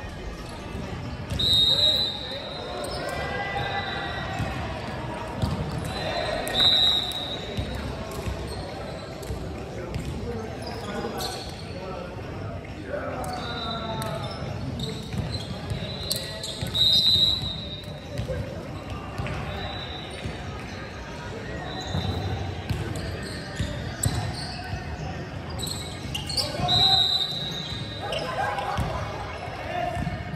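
Echoing sports-hall ambience between rallies: players' voices and chatter, balls bouncing on the hardwood court, and short high sneaker squeaks every few seconds.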